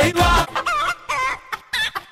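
Music with a beat stops about half a second in, followed by several short, wavering high-pitched calls separated by brief gaps.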